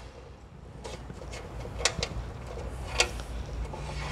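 A few faint clicks and knocks as a hand works in a drained CVT transmission oil pan, among its magnets, over a low steady hum.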